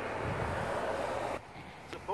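A minivan driving past on a road, its tyre and engine noise steady until it cuts off abruptly about one and a half seconds in.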